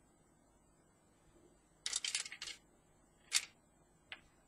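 Small parts and wire-lead indicators being handled on a desk: a quick cluster of clicks and rattles about two seconds in, then one sharp click.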